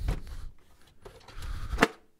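2023 Nissan Rogue's plastic glove box being lifted back up toward the dashboard: soft rubbing and handling noise, then a single sharp plastic knock shortly before the end.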